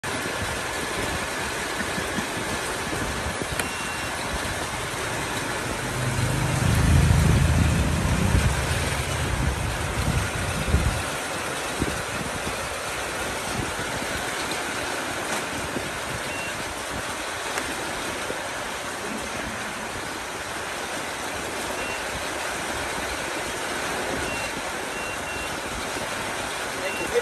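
Steady hiss-like background noise, with a deep low rumble that swells and fades between about six and eleven seconds in, and a few faint, short high beeps.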